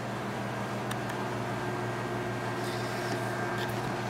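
A steady low mechanical hum, even and unchanging, with a couple of faint ticks.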